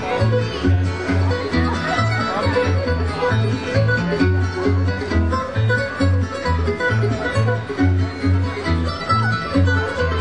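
Live acoustic bluegrass instrumental played by mandolin, acoustic guitar and upright bass together, the bass plucking a steady beat of about two notes a second under quick picked notes.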